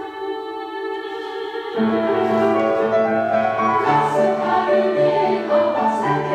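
Women's choir singing a held chord. About two seconds in, piano accompaniment enters with repeated low notes, and the choir sings on louder over it.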